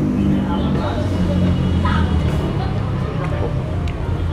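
Steady low rumble of motor-vehicle traffic, with voices talking in the background.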